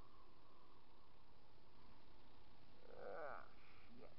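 A 2014 Yamaha Zuma 50F scooter rolling with its engine stalled from running out of gas: only a quiet, steady wind and road noise, with no engine running. A brief pitched sound with a wavering pitch comes about three seconds in.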